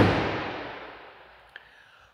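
Pickup truck tailgate slammed shut: one loud bang that rings and dies away over about a second and a half.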